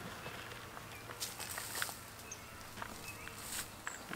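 Faint rustling with a few soft, light taps: crumbly IMO4 microbial soil being scattered by hand over fish on a compost pile.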